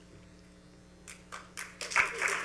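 Audience in a hall beginning to clap: a few scattered claps from about a second in, thickening into applause at the end, over a low steady electrical hum.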